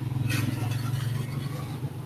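A steady low hum with a rapid, rough pulse, carried over a video call from a participant's open microphone, with a brief hiss about a third of a second in.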